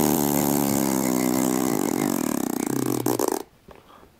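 A person blowing a long, loud raspberry, lips buzzing, which cuts off abruptly about three and a half seconds in.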